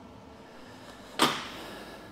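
A single sudden scrape-knock about a second in that fades within half a second: the brake cross shaft bar being handled on the steel welding table as it is picked up.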